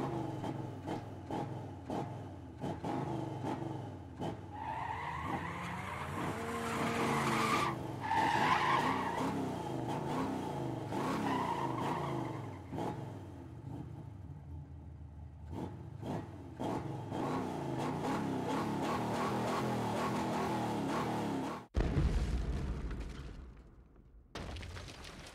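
Dubbed drag-racing sound effect: a race car engine revving with wavering pitch and tyre screech. Near the end it cuts off suddenly into a short, loud low crash.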